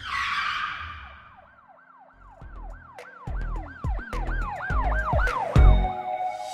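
Channel-intro sound design: a whoosh, then a siren sound effect wailing up and down about three times a second over deep bass hits that grow louder toward the end.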